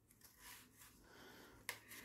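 Near silence: faint handling of a hockey goalie mask's straps, with one light click about 1.7 seconds in.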